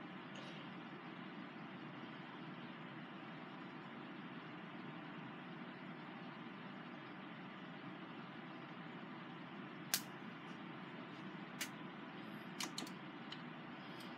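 Quiet steady room hum, with a few sharp little clicks in the last few seconds as small objects are handled.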